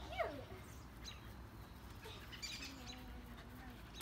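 Quiet stretch that opens with a short falling whine-like cry, followed by a few faint, high, brief chirps.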